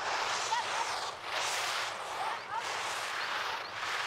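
Skis carving through slalom turns on hard-packed snow: a scraping hiss that swells and fades about once a second as the edges bite at each turn.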